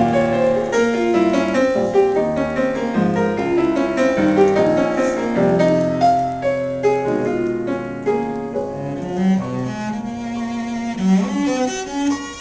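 Cello and piano playing a classical sonata together: a bowed cello line over piano notes and chords. Near the end the piano thins out and the cello's long notes with vibrato carry on.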